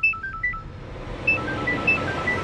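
A quick melody of short, pure, beep-like high notes, played as two brief phrases with a pause between them, over a soft low music bed.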